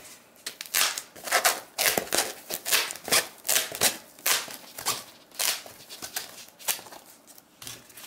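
Leatherman Raptor rescue shears cutting through a thick foam rubber mat, a short snip with each closing stroke, about two strokes a second.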